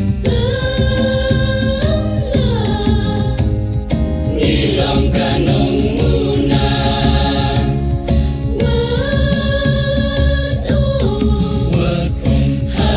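A choir singing long held notes in phrases of a couple of seconds, gliding from one note to the next, over accompaniment that keeps a steady beat.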